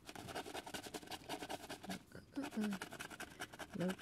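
A scratcher coin scraping the coating off a lottery scratch-off ticket in rapid short strokes, pausing briefly about halfway through.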